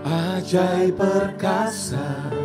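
Slow worship song: a lead singer's voice, with backing singers, over sustained instrumental accompaniment.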